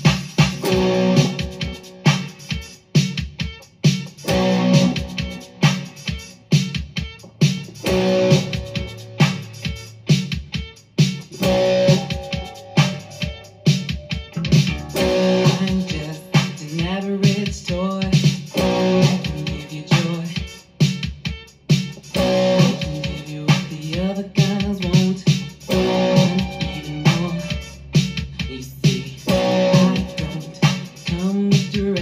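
Strat-style electric guitar playing the song's power-chord part and its hammer-on and pull-off riff in rhythm, over a backing track with a steady beat and bass line.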